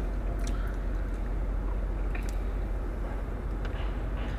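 Steady low rumble of a car's interior, engine and road noise heard from inside the cabin, with a few faint clicks scattered through it.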